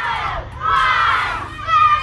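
A group of children shouting and cheering together, with many voices overlapping and sliding up and down in pitch, louder in the second half.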